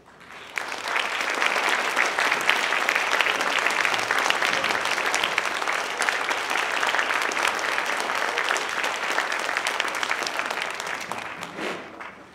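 Audience applauding: the clapping starts about half a second in, holds steady, and dies away near the end.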